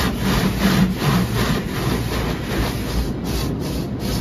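Cloth brushes of an automatic car wash scrubbing over the car, heard from inside the cabin: a rhythmic swishing and rubbing of about three to four strokes a second.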